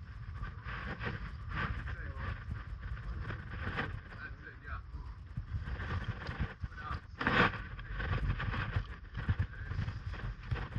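Wind rumbling on a head-mounted camera microphone while a rock climber leads, with short breaths or grunts from the climber every second or two, the loudest about seven seconds in.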